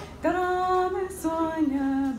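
A woman singing a Scottish Gaelic song solo and unaccompanied. After a short breath at the start she holds a few notes that step downward in pitch, with a brief hissing consonant about a second in.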